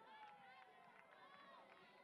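Faint, distant voices calling out at a ballpark: players or spectators shouting during a pitch, heard far off and quiet.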